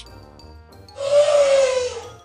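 An elephant trumpeting once, a loud blast about a second long that falls slightly in pitch, over soft background music.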